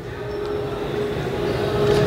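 Steady background noise of a large event hall: a dull rumble with a faint steady hum, swelling gradually louder.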